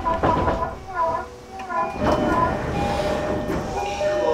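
Inside a JR East E233-series electric motor car on the move: the traction motors and inverter give off a whine in several pitches that shift up and down, over the rumble of the wheels on the rails.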